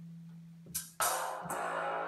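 Music from the Drum Pads 24 app playing through a tablet's speaker: a steady low held note, then a loud plucked-string sample hits about a second in and rings on, slowly fading.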